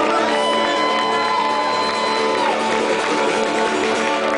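Guitar played live in a club, its chords held and ringing out steadily.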